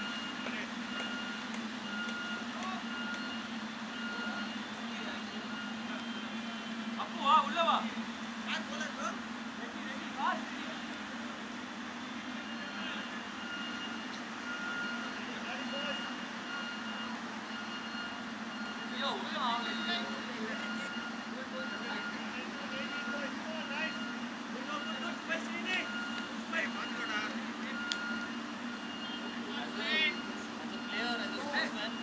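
Open-field background with a steady low hum and a faint beeping tone that repeats on and off. Over it come short shouts from players, loudest about seven seconds in and again in the second half.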